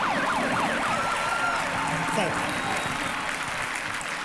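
Police siren sound effect, a fast rising-and-falling wail that fades out about a second in. A steady wash of studio-audience applause follows.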